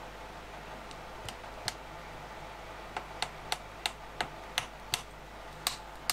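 Light hammer taps driving glued wooden wedges into the slotted ends of wedged tenons. A few scattered taps come first, then a steady run of about three taps a second through the second half.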